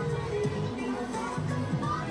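Music with a held melody over a repeating pattern of low notes.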